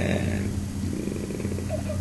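A man's drawn-out, hesitant 'eh' trailing off, then a pause under a steady low electrical hum.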